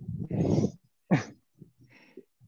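A person's breathy exhale, then a short voiced sound falling in pitch about a second in, followed by a few faint low vocal sounds.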